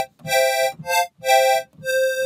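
Software synthesizer playing two square-wave oscillators detuned against each other, giving a reedy, chorus-like tone. It plays a short phrase of separate notes, about two a second.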